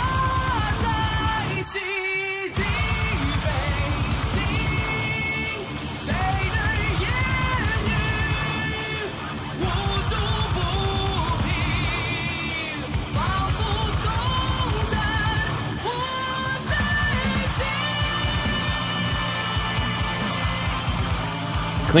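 Metalcore song playing: distorted guitars and fast, dense drumming under a woman's voice singing clean lines and screaming. The band drops out briefly about two seconds in, then comes back in.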